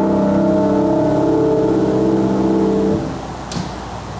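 Church organ holding a final full chord that ends abruptly about three seconds in, leaving room hiss. A brief sharp rustle, typical of handled sheet music, follows shortly after.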